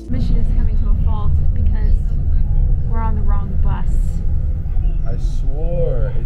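Loud low rumble of a city bus's engine and road noise heard from inside the cabin, with people talking over it.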